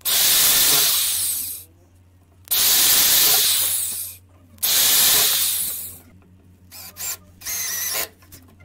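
Cordless drill boring pilot holes through a steel hinge's screw holes into plywood: three runs of about a second and a half each, then a few short bursts of the trigger near the end.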